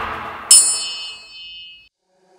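Electronic workout music fading out, then, about half a second in, a single bright bell-like ding that rings for about a second and a half. The ding is the interval timer's signal that the break is over and the work round begins.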